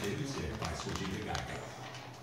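Quiet kitchen room sound with faint background talk and a few light taps and rustles.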